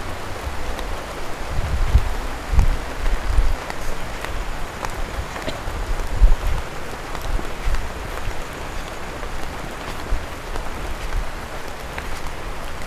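Steady rain hiss, with irregular low thumps from the handheld camera being moved about.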